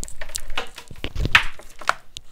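Several short plastic clicks and knocks as a rebuilt battery pack is fitted into a Dyson cordless vacuum's handle, the loudest a dull knock about halfway through.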